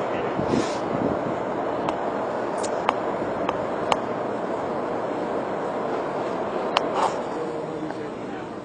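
Steady background murmur of people talking at a distance, with a few short faint clicks scattered through it; the din eases a little near the end.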